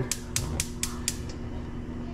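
Gas range burner's spark igniter clicking, about five quick ticks at roughly four a second, as the knob is turned. The clicking stops after about a second once the burner catches.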